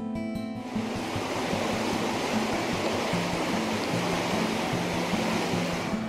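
Steady rushing of river water that starts abruptly about a second in and drops away near the end, over plucked-guitar background music.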